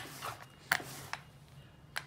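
Quiet rolling of a paint-loaded sponge pattern roller back and forth in a well-worn metal paint tray, with a few sharp clicks, the clearest about three-quarters of a second in.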